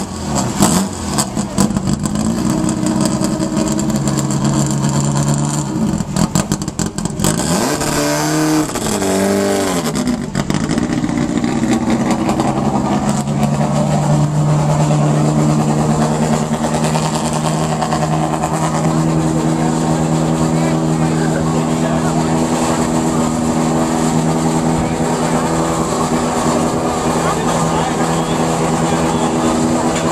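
Off-road race vehicle engines running loudly. One is revved up and down about eight seconds in, then settles into a steady idle that holds to the end.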